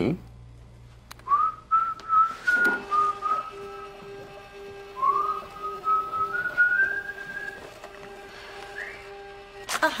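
A person whistling a short tune in two phrases, each opening with an upward slide, over a soft held note of background music.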